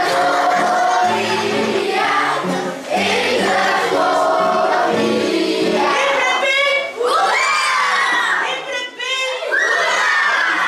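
A group of children singing a Sinterklaas song to guitar accompaniment, breaking about six seconds in into a classful of children shouting and cheering loudly.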